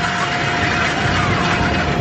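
Sky ride chairlift drive machinery running at the loading station as the chair lifts off: a steady mechanical hum and rumble with a high, steady whine over it.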